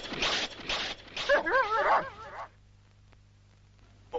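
A dog barking in short bursts, then giving a wavering, high whine from about a second and a half in. The sound stops about two and a half seconds in.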